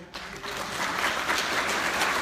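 Audience applauding: the clapping starts right after the words and swells over the first second, then holds steady.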